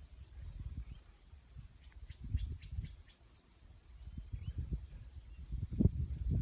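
Outdoor ambience: a quick run of faint, short bird chirps about two seconds in, over irregular low rumbling on the microphone that grows louder near the end.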